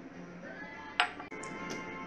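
A glass whiskey tasting glass set down on a countertop with a single sharp clink about a second in. Faint background music with held tones runs underneath.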